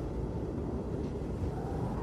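Quiet, steady low rumble with a faint steady hum above it, no distinct events.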